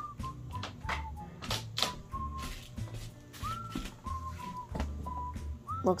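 A whistled tune of short, clear notes that mostly sit on one pitch, a few starting with a small upward slide. Light taps and a low hum run underneath.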